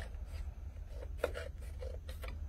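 Scissors cutting into a sheet of construction paper, a few short snips, over a steady low hum.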